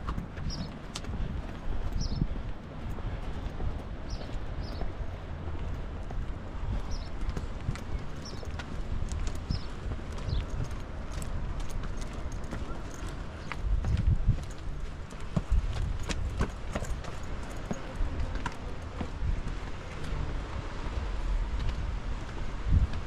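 Footsteps walking on a paved path, a run of short, sharp steps, over a low rumble of wind on the microphone.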